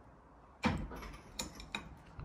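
A single soft knock a little over half a second in, followed by two lighter clicks, in a small room.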